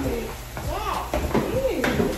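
A high-pitched voice sliding up and down in pitch, without clear words, and one sharp click near the end.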